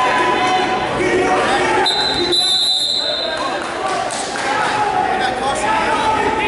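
Voices and chatter echoing in a gymnasium, with one steady, high whistle blast of about a second and a half about two seconds in, the kind a wrestling referee blows.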